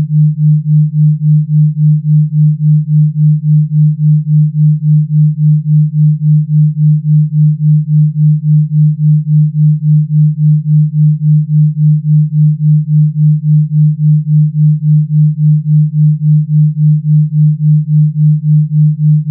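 Generated Rife-frequency sine tone: a single low, pure electronic tone that pulses evenly about three times a second.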